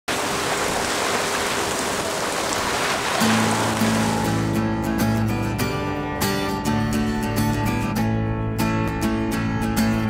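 Rushing water from a ship's bow wave sweeping along the hull for about three seconds, fading out as music comes in. The music, strummed acoustic guitar with a steady beat, starts about three seconds in and carries on.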